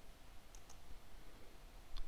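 Faint computer keyboard keystrokes: two light clicks about half a second in, then a sharper keypress near the end, the Enter key running a terminal command.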